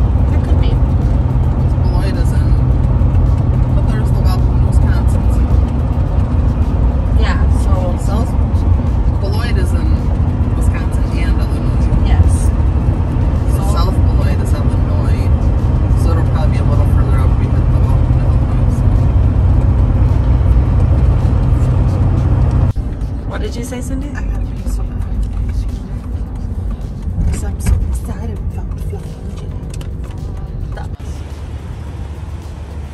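Steady low road and engine rumble inside a Chevrolet pickup's cab at highway speed, with music and voices over it. The rumble drops away abruptly about two-thirds of the way through, leaving the music and voices quieter.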